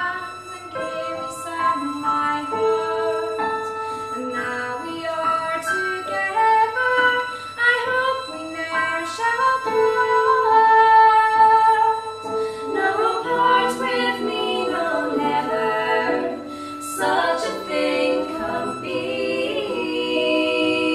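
Traditional folk song played live: a woman singing over two fiddles and a digital piano.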